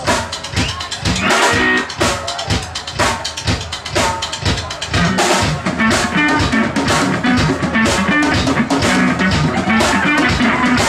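Live drum kit playing a run of hits, with kick, snare and cymbals. A guitar joins in about halfway through.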